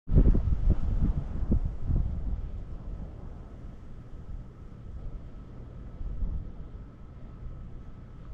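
Wind buffeting the microphone in low, irregular gusts, strongest in the first two seconds and then easing to a lower rumble. A faint steady high tone runs underneath.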